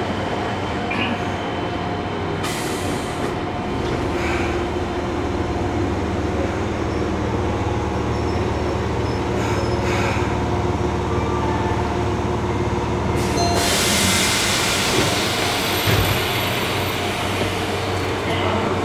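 Interior running sound of a Fukuoka City Subway 1000N series train with Hitachi 3-level IGBT-VVVF control: steady traction motor and inverter tones over wheel and track rumble as it runs toward a station stop. About 13 seconds in a loud hissing rush joins the rumble, with a couple of dull thumps a little later.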